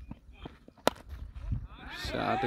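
A single sharp crack of a cricket bat striking a leather ball, about a second in, with a few fainter ticks before it.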